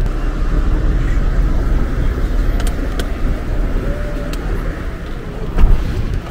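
Steady low rumble of a Toyota car driving, heard from inside the cabin, with a few light clicks in the middle and a thump near the end.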